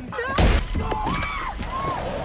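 A car's side window smashed in with one sharp blow about half a second in, glass shattering, followed by a woman's frightened, wavering cries.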